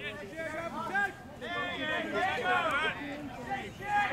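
People chatting, several voices overlapping with no clear words.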